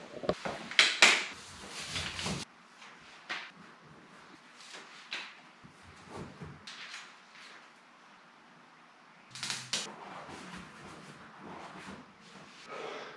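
Handling noise: a few knocks and rustles at first, then faint scattered rustles and light taps as vinyl decals are peeled from their backing and pressed onto a plastic kayak hull. A couple of louder, sharper sounds come about three quarters of the way through.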